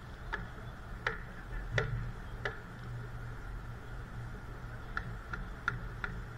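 A series of short, sharp clicks: four evenly spaced, about one every 0.7 seconds, then a quicker run of four near the end. Beneath them is a steady low hum.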